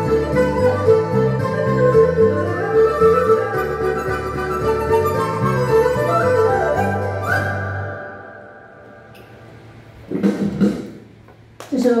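A Chinese traditional ensemble of erhu, pipa and dizi playing a lively, rhythmic folk tune that ends about seven seconds in on a single held high flute note, which fades out. After a quiet gap, a short burst of sound comes near the end.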